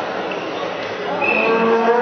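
A horn sounds a steady, buzzing note starting about a second and a half in and holding on, over the noise of the crowd in the hall.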